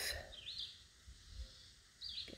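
Faint bird chirp: one short call about half a second in, against quiet ambience.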